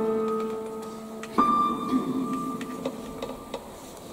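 Digital piano playing a soft, slow passage: a chord fades away, another chord is struck about a second and a half in and dies down, with a few light notes after it.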